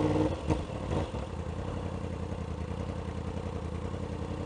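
2016 Yamaha R1's inline-four engine idling steadily in stopped traffic, a little quieter after about a second.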